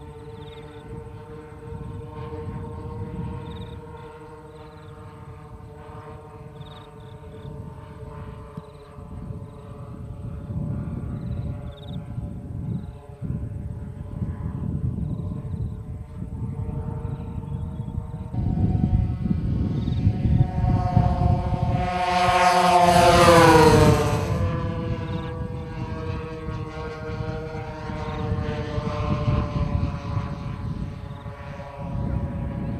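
Radio-controlled scale model Lockheed Constellation, its four propeller engines droning steadily in flight. The sound swells as the model passes close by, loudest a little past the middle, with the pitch dropping as it goes past, then drones on more quietly.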